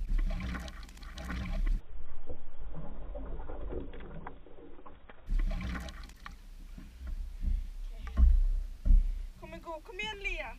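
Lake water sloshing and splashing around an action camera at the waterline, with rumbling knocks from the water and handling. About two seconds in the sound turns muffled for about three seconds, and near the end a short voice cry is heard.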